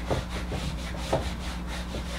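Felt whiteboard eraser wiping marker off a whiteboard in a series of back-and-forth rubbing strokes.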